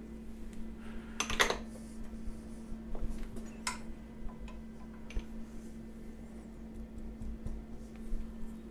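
Faint scattered metallic clicks and taps from handling tooling at a milling machine, with two brief louder noises about a second in and near four seconds, over a steady low hum.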